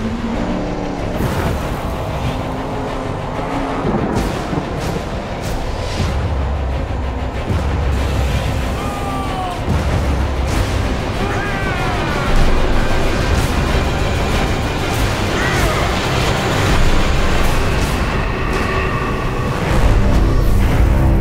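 Film-trailer soundtrack: loud music mixed with vehicle engine noise, crashes and explosions. Sharp hits come throughout, over heavy low rumble. Short gliding whines come in the middle, and it grows louder about two-thirds of the way through.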